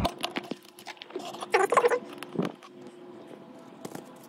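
Needle-nose pliers clicking and plastic crinkling as fragments are picked out of a torn plastic container packed with molding clay. A brief voice-like sound comes about one and a half seconds in.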